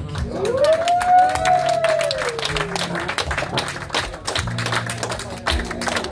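Small audience clapping, dense and steady throughout, while one voice gives a long drawn-out cheer that rises and then falls over the first three seconds.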